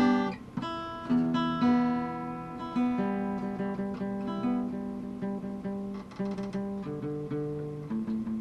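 Acoustic guitar played solo: a few sharp strummed chords, then notes picked repeatedly about three times a second and left to ring, moving to a new chord near the end.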